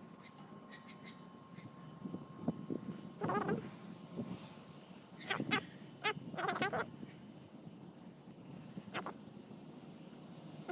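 A few short, wavering vocal cries, heard about four times, with faint scuffing between them.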